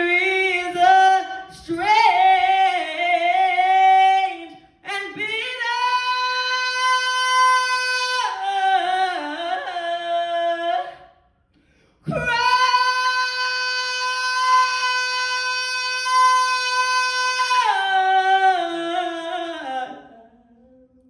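A woman singing solo and unaccompanied, in three long drawn-out phrases with no clear words: runs that bend up and down, then long steady held notes, the last held for several seconds before falling away near the end.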